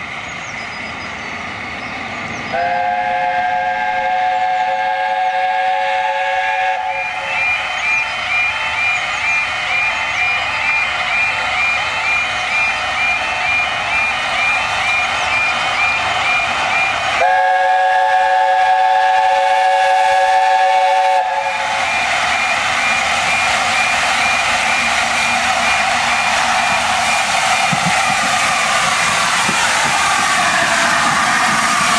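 LNER A4 steam locomotive 60007 Sir Nigel Gresley sounding its chime whistle in two long blasts, the first about 2.5 s in lasting some four seconds and the second about 17 s in. Between and after the blasts, a fast warbling level-crossing alarm sounds over the growing noise of the approaching train.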